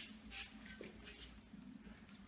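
Faint shuffling of a dog's paws on a tiled floor, with a few soft taps.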